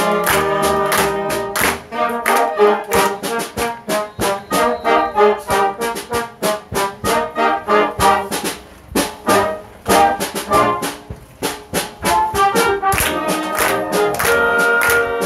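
A youth wind band of clarinets, trumpets, trombones and tuba playing live, in short accented notes on a steady beat. The band drops quieter briefly twice, after about eight and about eleven seconds, then builds back up near the end.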